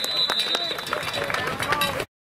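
A referee's whistle blows one steady shrill note for a little under a second, blowing the play dead, over shouting voices and scattered sharp clacks on the field.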